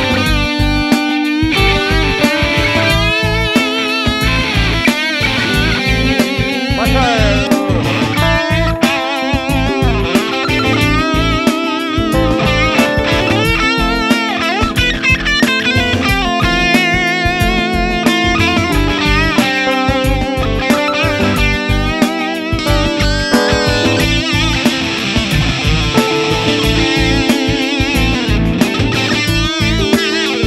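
Sterling by Music Man LK100 electric guitar played as a lead, with singing vibrato and string bends, over a backing track.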